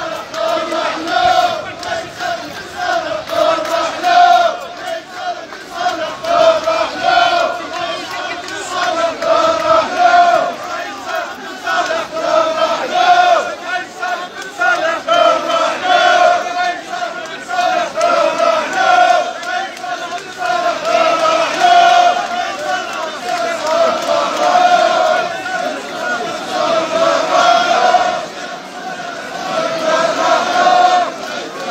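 A large crowd of marching protesters chanting slogans in unison. The chant repeats in a steady rhythm of roughly one beat a second.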